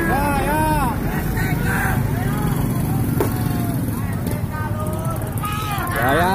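Trucks driving past with their engines running, a steady low rumble, while the people riding on them shout; loud shouts come at the start and again near the end.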